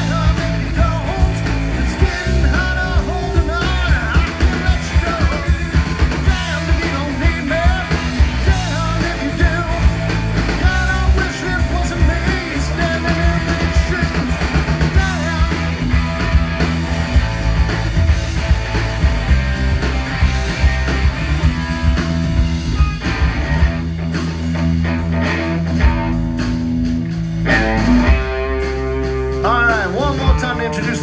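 A rock power trio playing live: electric guitar, bass guitar and drum kit, with the drums keeping a steady beat.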